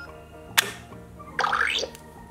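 LeapFrog Scoop & Learn Ice Cream Cart toy: a sharp plastic click as its electronic scoop picks up a toy ice-cream scoop, then, about a second and a half in, a short electronic sound effect from the toy whose pitch rises and falls.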